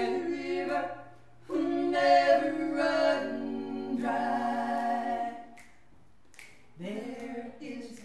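Three women singing unaccompanied in close harmony, with long held notes. The singing breaks off for about a second near three-quarters of the way through, then starts again.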